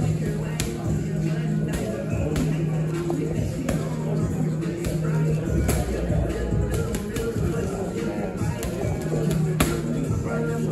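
Boxing gloves smacking into a trainer's hand-held punch pads in quick, irregular strikes, over music with a steady bass line playing in the gym.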